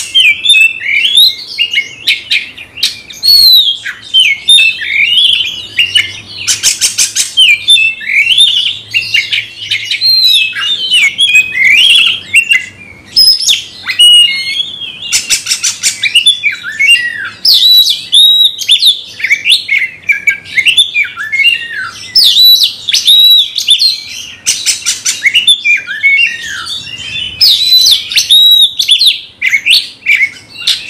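Oriental magpie-robin singing a loud, unbroken song of fast, varied whistled phrases, broken about five times by short harsh rattling notes.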